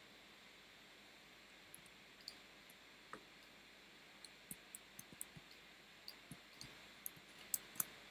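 Faint, scattered clicks of a computer mouse and keyboard over a low steady hiss, coming more often in the second half, with the two loudest clicks close together near the end.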